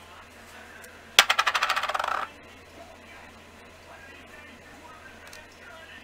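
A small hard object dropped onto a hard surface, clattering in a fast rattle for about a second as it settles.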